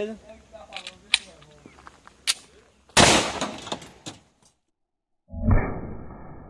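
A few sharp clicks as a Taurus G2C 9mm pistol is loaded, then a single loud pistol shot about three seconds in that trails off over about a second. Near the end, after a short silence, a low drawn-out rumble with a steady whine follows, from slowed-down slow-motion footage.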